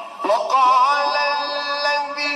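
A man's voice reciting the Quran in melodic tilawat: after a brief dip, the voice rises about half a second in into one long held note with slight ornamental wavering, amplified through microphones.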